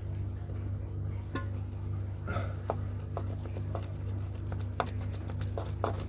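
Steady low electrical hum with scattered light clicks, taps and scrapes of a cable being worked through a drilled hole in a brick wall.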